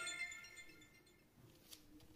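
A mobile phone's startup chime: several ringing tones that fade away over the first second, leaving near silence with a faint click near the end.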